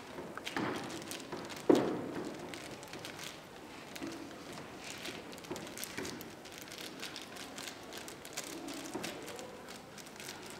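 Ziploc plastic bag crinkling and crackling in the hands as a strawberry inside it is squished, with irregular small crackles and one sharp knock about two seconds in.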